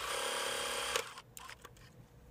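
Electric sewing machine running a short straight stitch, a fast, even run of needle strokes that stops abruptly about a second in with a click. A few faint clicks follow.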